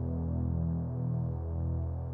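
Soft, sustained low keyboard chords: a held pad of several notes that shifts slowly.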